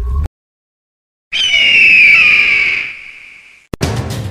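After about a second of silence, a single loud, shrill cry sounds, falling slowly in pitch and fading away over about two seconds. A short click follows just before the end.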